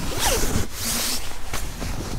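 A zipper being pulled in several short rasping strokes, with the nylon of a sleeping bag rustling as someone shifts inside it.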